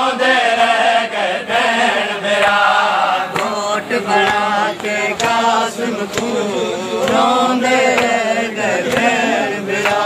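Men's voices chanting a Shia noha (Muharram lament) in a slow refrain, over a steady beat of open-handed chest strikes (matam), a little under two a second.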